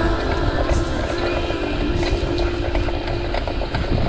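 Wind rumbling on the microphone and a cyclo-cross bike rattling as it is ridden over bumpy grass and mud, with background music playing over it.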